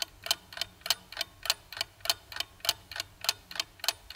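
Clock-ticking sound effect laid over an on-screen countdown timer: quick, even ticks, about four a second.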